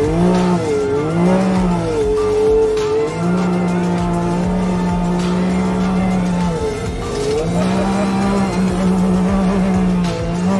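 Can-Am side-by-side engine revving up and down repeatedly as it drives a dirt trail at speed.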